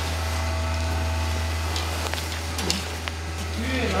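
Steady low mechanical hum, with faint voices behind it and a few small clicks.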